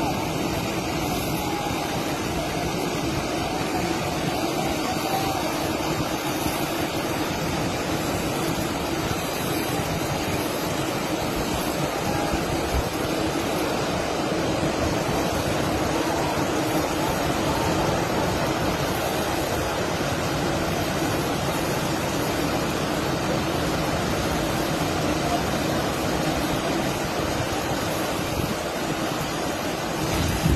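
Landslide of mine spoil and mud sliding into a flooded pit: a steady rushing rumble that holds at much the same level throughout.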